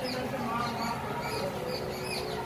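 Short high-pitched chirps repeating a few times a second, over faint talk in the room.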